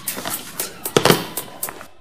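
A rapid, irregular run of sharp clicks and crackles over a steady hiss, loudest about a second in.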